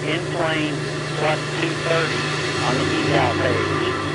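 Indistinct, unintelligible voices over a steady low hum and faint hiss.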